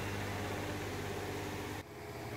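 Steady low hum with a hiss of background noise in a small room, which drops away suddenly near the end.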